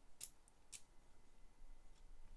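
Near silence with two faint, short clicks of plastic Lego Technic parts being handled and fitted, about a quarter and three quarters of a second in.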